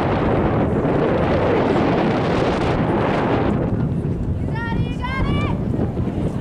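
Wind buffeting the microphone, then about four and a half seconds in, high-pitched shouted calls from players on the field.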